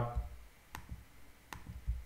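Two sharp computer mouse clicks about three quarters of a second apart, in a pause in the talk.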